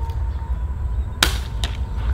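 Cheap BB gun firing a single shot, a sharp crack a little over a second in, followed by a fainter click.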